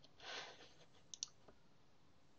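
Two quick, faint computer mouse clicks a little past a second in, followed by a fainter tick, selecting an item on screen.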